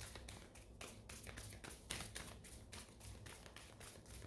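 Near silence: quiet room tone with a low hum and many faint, irregular ticks and taps.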